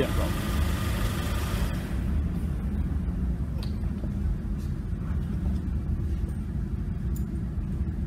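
A 2013 Cadillac ATS's running A/C system is shut off about two seconds in: a steady hiss stops, leaving a low rumble and a few faint clicks.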